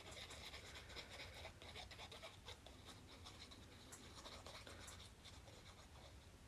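Faint scratching and light paper handling as the nozzle of a white glue squeeze bottle is rubbed over a small piece of cardstock, close to silence.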